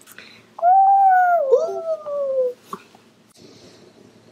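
A drawn-out whining cry of about two seconds, sliding slowly down in pitch, with a second, wavering line joining it partway through.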